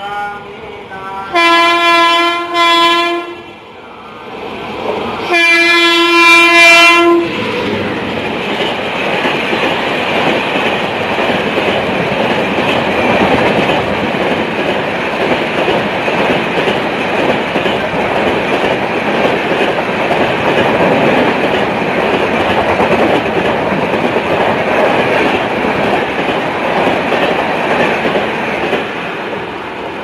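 Train horn sounding two long blasts, each about a second and a half, as an express passenger train comes through. The train then runs past at high speed: a loud, steady rush of wheels and coaches for about twenty seconds, which eases off near the end as the last coach goes by.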